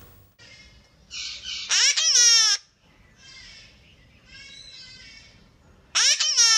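Hahn's macaw calling: a harsh rasp about a second in, then a loud, high call that falls in pitch, followed by softer chattering calls and the same loud falling call again at the end.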